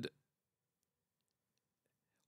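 Near silence: room tone with a few faint clicks, after the last moment of a spoken word at the very start.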